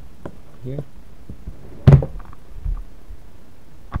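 A single sharp thump about two seconds in, much louder than anything else, with faint clicks and knocks of handling around it.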